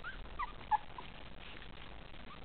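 24-day-old Italian Greyhound puppies giving several short, high squeaks and whimpers within the first second, one louder than the rest.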